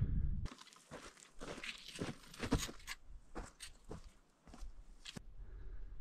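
Footsteps crunching on loose rock and gravel: an irregular run of scrapes and clicks that stops abruptly about five seconds in.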